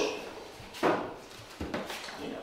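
A sharp knock about a second in, then a fainter knock near the end, from the lid of a stainless steel tank being handled.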